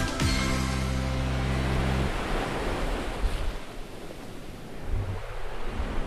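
A song's final chord held for about two seconds, then the sound of surf: waves washing onto a shore, swelling again near the end.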